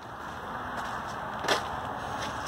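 Steady background hiss of outdoor ambience, with a single short click about one and a half seconds in.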